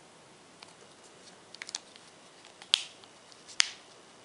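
A few light ticks, then two sharp plastic clicks about a second apart, as the charging-port flap of a Seidio Obex waterproof phone case is handled and snapped shut.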